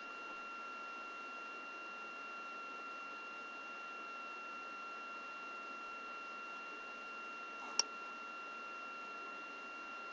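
Faint steady hiss with a thin, steady high-pitched whine throughout, and a single short click a little under eight seconds in.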